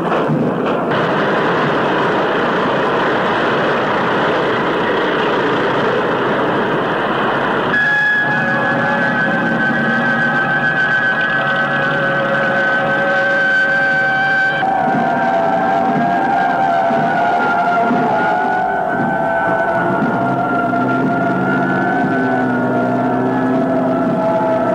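Military vehicles passing in a parade, a dense engine-and-track noise for about the first eight seconds. After that, held musical notes take over and shift pitch every few seconds.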